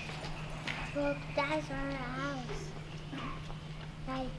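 A traditional Hmong song played back in an auditorium. A high voice sings a wavering, bending melodic line over sharp clicking percussion, with a steady low electrical hum underneath.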